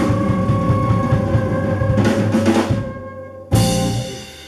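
Live blues band playing the closing bars of a tune: saxophone and flute hold a long note over a drum roll, a cymbal crash comes about two seconds in, the band drops away, then one sharp final hit near the end rings out.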